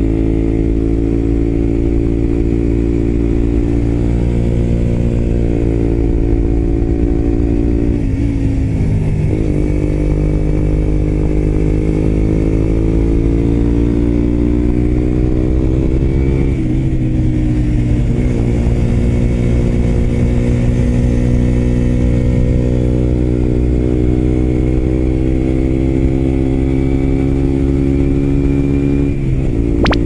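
Suzuki GSX-R125's single-cylinder four-stroke engine, breathing through an aftermarket muffler, pulling hard under way uphill. Its pitch climbs steadily, then dips and climbs again three times as the revs drop and build back up.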